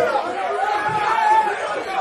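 Men's voices talking and calling out over crowd chatter, with no music playing: the beat has cut out.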